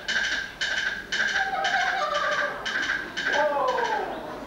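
Stage sound effect of a horse's hooves clip-clopping at a steady pace, about two hoofbeats a second. A pitched call that falls in pitch comes in near the end.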